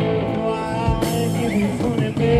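Live rock band playing a blues: electric guitar notes held over bass, keyboard and drums, with a drum-kit hit about halfway through.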